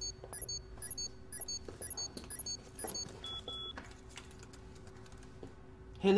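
A telephone ringing in rapid electronic beeps, about two a second, which stops about halfway through. Two shorter, lower beeps follow, then quiet footsteps on a hard floor, over a steady low hum.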